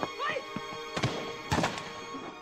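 Film score playing under a sword fight: a shouted cry near the start, then two sharp hits about a second and a second and a half in.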